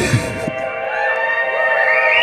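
Live electronic music: a sustained chord held steady, with a higher melody line that slides up and down in pitch above it from about a second in.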